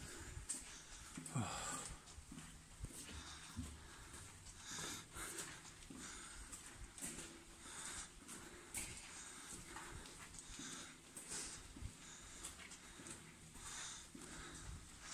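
A person walking: soft, irregular footsteps with heavy breathing, heard in a tunnel.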